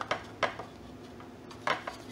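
A paintbrush tapping and dabbing black paint onto hard plastic stormtrooper belt armor: a single light click about half a second in, then a quick run of small taps and scrapes near the end.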